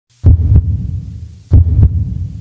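Heartbeat sound effect: two deep, loud lub-dub double thumps, the second about a second and a quarter after the first.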